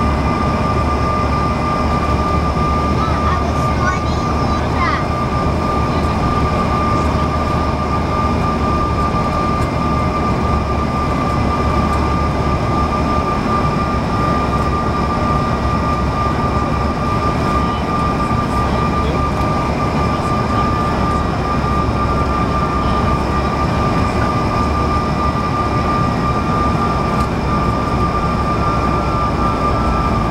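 Cabin noise inside a Bombardier CRJ-900 airliner on final approach: a steady rush of airflow with a constant high whine from its CF34 turbofan engines.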